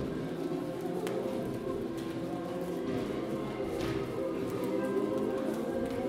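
A choir holds overlapping low sustained notes while performers' footsteps and a few knocks sound on a wooden floor.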